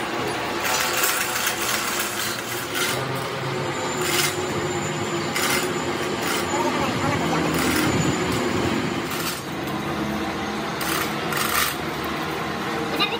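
Scattered metal clanks and chain rattles from a truck rear axle housing slung in hoist chains as it is swung and lowered onto a steel bed. Voices are heard talking throughout.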